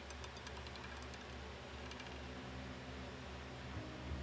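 A roulette ball clicking faintly as it bounces among the frets of a spinning wheel, with light clicks at the start and again about two seconds in, over a steady low hum.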